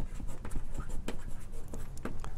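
Writing on a lecture board: a series of short, irregular taps and scratches as symbols are written.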